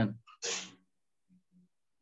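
The end of a man's spoken word, then a short breathy burst about half a second in, a breath or sniff from the speaker close to the microphone, followed by near silence.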